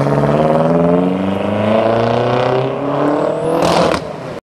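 BMW M6 Convertible's engine and exhaust under hard acceleration as it drives away, the pitch climbing steadily through one gear and then dropping near the end.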